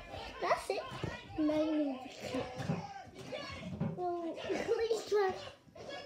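Children's voices chattering and calling out at play.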